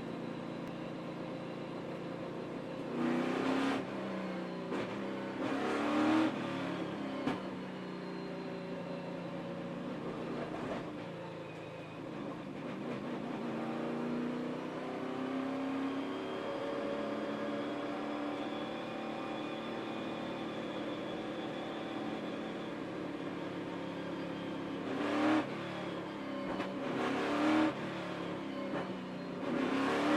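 V8 engines of NASCAR Cup stock cars running at low caution pace behind the pace car, a steady engine drone that rises and falls slowly in pitch. Louder rushes come as cars pass close to the microphone a few seconds in and again near the end.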